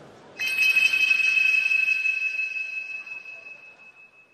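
A single bright bell-like chime struck about half a second in, ringing and slowly fading over about three seconds.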